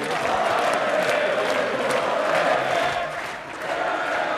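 Large crowd of football fans chanting together, many voices joined in a steady chant, dipping briefly near the end.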